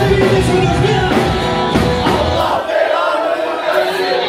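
Live rock band with electric bass, guitar and drums playing loud; about two-thirds of the way in the band drops out and the audience's voices carry on, shouting and singing.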